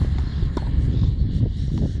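Steady wind rumble on the microphone, with a few faint knocks of tennis balls and footsteps on the court; the clearest knock comes about half a second in.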